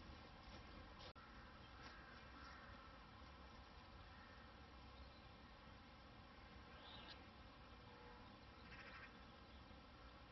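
Near silence: a faint steady background hum and hiss, with nothing standing out.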